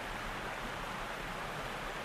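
Small creek tumbling over low waterfalls and riffles: a steady rush of running water.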